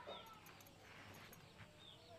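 Near silence, with two faint, short high chirps, one near the start and one near the end.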